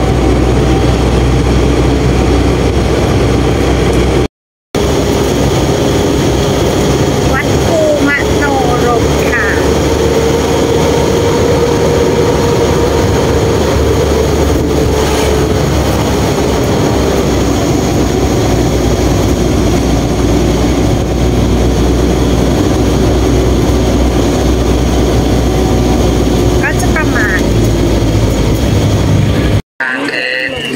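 Steady engine and road noise inside a moving vehicle: a low drone with an engine hum that rises and falls slowly in pitch. The sound cuts out briefly about four seconds in and again just before the end.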